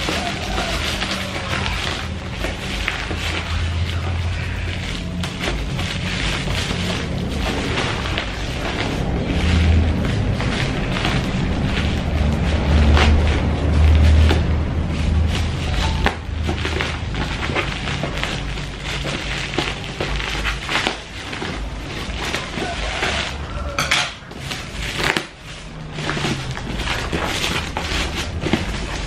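Black plastic parcel wrapping crinkling and tearing as it is cut open with scissors and pulled away by hand. Background music runs underneath.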